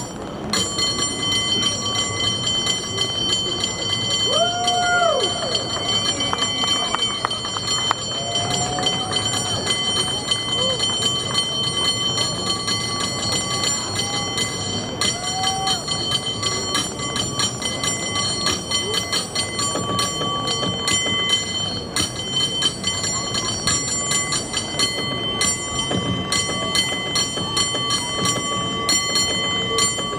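A cable car bell rung in a fast, rhythmic bell-ringing routine, with rapid strikes over the bell's steady ringing tones throughout.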